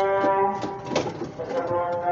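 Pigeon cooing mixed with background music whose melody moves in long held notes.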